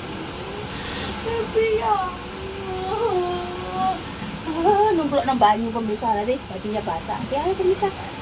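Voices: a woman speaking and calling in drawn-out, sing-song tones, over a steady low background noise.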